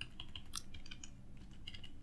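Computer keyboard keys tapped in a quick run of light keystrokes, as in text-editor commands being typed.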